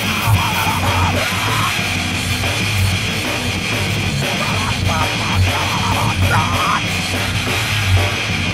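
Loud heavy rock music with a drum kit and guitar, playing without a break; a wavering higher part comes and goes over it.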